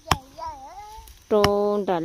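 Voices speaking, with a long drawn-out call about halfway through, and two sharp knocks, one right at the start and one about a second and a half in.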